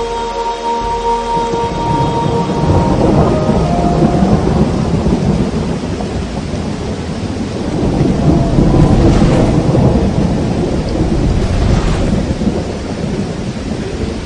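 Thunderstorm: steady heavy rain with deep rolls of thunder that swell about three seconds in and again about eight seconds in.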